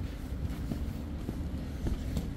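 Wind rumbling steadily on the microphone, a low dull buffeting without any pitch.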